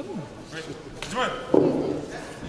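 Short shouted calls in a large sports hall, then a sudden loud noisy burst about one and a half seconds in.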